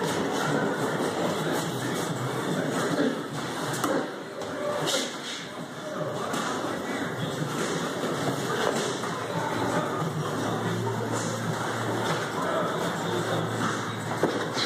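Boxing gym room noise: indistinct background voices in a large echoing room, with shuffling feet and occasional thuds from two boxers clinching on the ring canvas.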